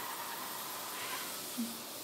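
Handheld steam cleaner (Bissell Steam Shot) letting out a steady jet of steam from its nozzle, an even hiss.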